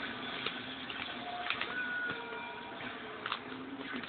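Plastic padded mailer crinkling and rustling as it is handled and its taped edge is picked at to open it, with scattered small clicks and crackles.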